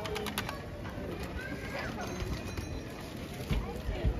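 Pedestrian-street ambience: passers-by talking and walking on cobblestones, with a bird cooing and a short run of sharp ticks in the first half second.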